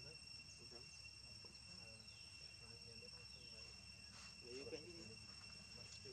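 Faint, steady high-pitched trill of insects, one unbroken tone.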